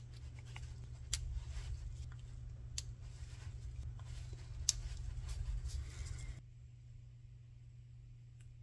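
Screwdriver working on the small screws of a chainsaw carburetor's diaphragm cover: faint scraping with a few sharp metal clicks, over a low steady hum. The handling noise stops about six seconds in.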